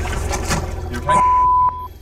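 Rumbling, rustling handling noise as a spring-trigger fishing rod goes off and the head-mounted camera is jolted, then a steady single-pitch censor bleep about a second in. The bleep runs for nearly a second and cuts off sharply, covering a shouted exclamation.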